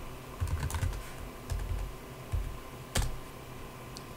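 Typing on a computer keyboard: an irregular run of key clicks, with one sharper key strike about three seconds in.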